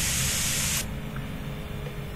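A steady, bright hiss that cuts off suddenly just under a second in, leaving only faint low background noise.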